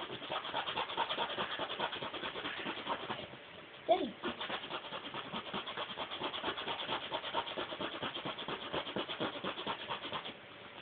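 A zipper being run up and down rapidly and without let-up, several scratchy strokes a second, pausing briefly about three and a half seconds in. A short falling squeal comes just before the strokes resume and is the loudest sound.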